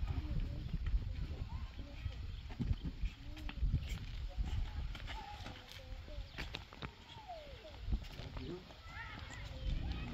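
Indistinct voices over a steady low rumble, with a few scattered knocks and rustles.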